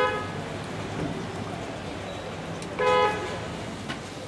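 A vehicle horn honking twice, two short toots about three seconds apart, over steady background noise.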